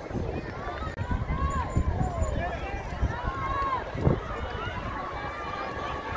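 Indistinct voices of people talking and calling out among the spectators, over a steady low rumbling noise, with a single dull thump about four seconds in.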